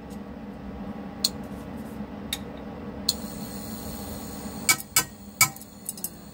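A few sharp clicks and clinks from kitchen handling at a frying pan on the hob, two spaced out early and a quick louder cluster of three near the end, over a steady low hum.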